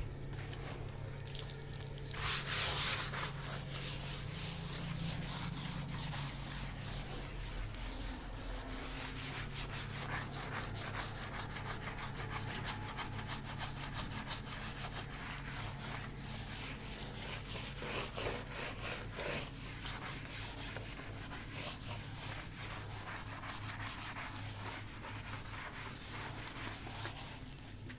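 Stiff brush scrubbing a wet, soapy tiled floor in rapid, uneven back-and-forth strokes, over a steady low hum.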